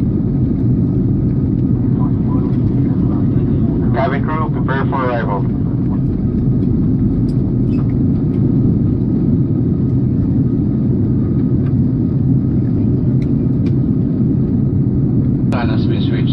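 Jet airliner cabin noise in flight: a steady, loud low rumble of engines and airflow heard from inside the cabin.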